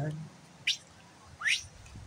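A bird gives two short, sharp chirps about a second apart, the second one sweeping upward.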